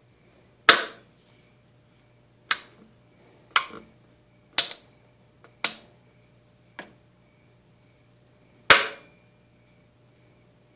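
Metal toggle switches on a homemade ten-transistor CB amplifier's front panel being flipped one after another: seven sharp clicks about a second apart, the first and last the loudest. A faint steady hum lies underneath.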